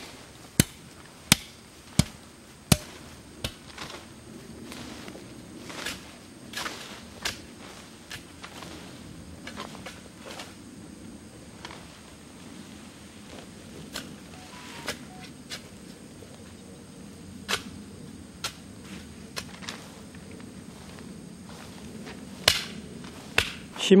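A flat tool beating down the loose soil of a grave mound, compacting it: sharp dull blows about every 0.7 s for the first three seconds, then only a few scattered knocks.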